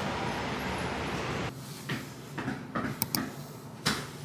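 Steady outdoor background noise that drops away about one and a half seconds in. A quieter room follows, with a few sharp clicks and taps of small objects being handled, three of them close together near the end.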